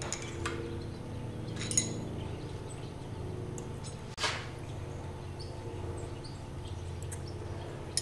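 A few light metallic clinks of hand tools against the valve tappets and adjusting screws of a Willys F-134 Hurricane engine as the exhaust valve lash is checked and set, the sharpest clink about four seconds in. A steady low hum runs underneath.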